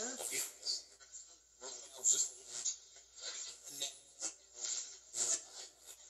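Ghost box app on a tablet, played through a small amplified speaker, putting out choppy, rapidly switching fragments of voice-like sound and noise. The investigator takes these fragments for spirits answering him.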